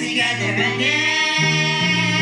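Young girls of a praise team singing a song of praise into microphones, with sustained electric keyboard accompaniment underneath.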